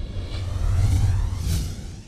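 Outro logo sting: a deep bass rumble under a whoosh that builds to a bright peak about one and a half seconds in, then fades out.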